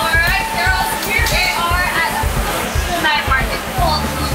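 Women's voices talking over background music with a steady low beat.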